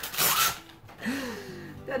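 A short ripping rasp, about half a second long, as new horse boots are handled out of their packaging.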